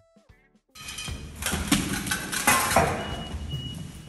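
After a brief quiet moment, a noisy gallery recording of activists splattering a painting with mashed potato starts: several sharp clattering knocks and clinks, with music underneath.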